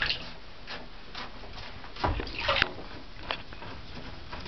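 Ferrets paddling in shallow bathtub water: scattered light splashes and taps, with a louder burst of splashing about two seconds in.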